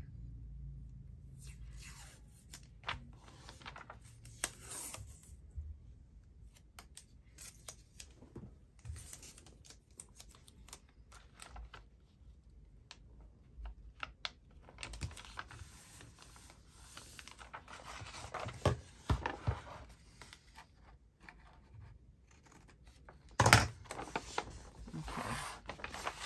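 Patterned paper tape (washi tape) being pulled off its roll and torn, with paper rustling as the strip is pressed down along a page join; a sudden louder crackle comes shortly before the end.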